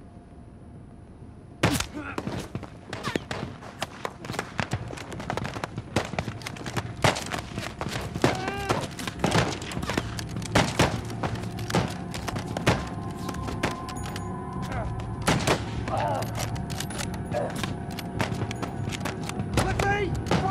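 Battle gunfire: after a brief hush, a sudden loud shot about two seconds in opens a dense, irregular fusillade of many overlapping rifle shots that keeps going, with voices shouting through it.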